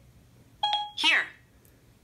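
iPhone Siri tone: a short electronic chime a little over half a second in, then Siri's synthesized voice briefly answering "Here." with a falling pitch.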